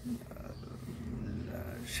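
Wind buffeting the microphone: a low, uneven rumble with no clear rhythm, growing slightly louder toward the end.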